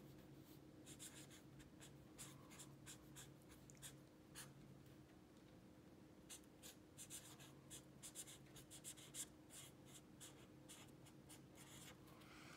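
A pen writing capital letters on lined notebook paper: faint, short scratching strokes that come thicker in the second half.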